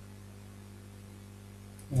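Steady low electrical hum with a faint hiss in the background, typical of mains hum picked up by the recording microphone setup.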